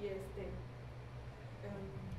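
Faint speech, a few quiet words or murmurs, over a steady low hum from the room or the recording.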